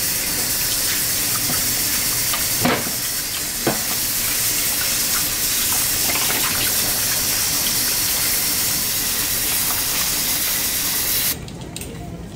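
Kitchen tap running steadily into a sink of dishes, the water splashing as a sponge is rinsed under the stream. Two brief knocks come about three and four seconds in, and the running water stops abruptly near the end.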